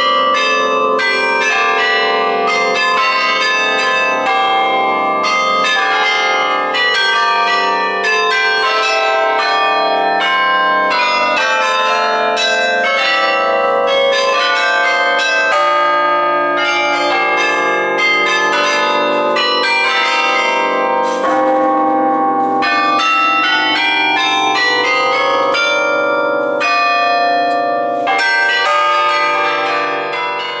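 Carillon bells ringing out a melody from the belfry, many struck bell notes following one another quickly and ringing on over each other.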